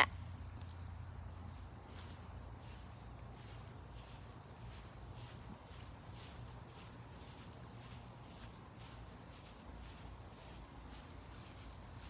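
Quiet outdoor ambience: a low steady hum under a faint, high insect chirp repeating evenly about two or three times a second, with soft footsteps on grass.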